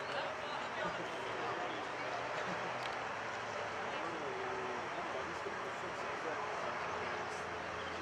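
Indistinct voices of rugby players and spectators calling out across an outdoor pitch, overlapping with no single clear talker, over a faint steady low hum.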